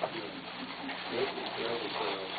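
Low, indistinct murmuring voices with paper rustling as brown wrapping paper is pulled out of a gift bag.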